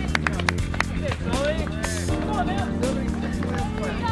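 Music with steady held chords, with voices over it from about a second in; a few sharp taps or claps in the first half-second.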